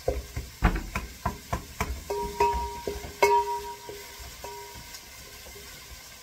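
A spoon knocking and scraping against a cooking pot as tripe is stirred, a quick run of knocks in the first three seconds or so, then fading. A faint held note sounds underneath in the middle.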